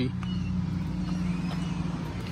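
A steady low mechanical hum with no sudden events.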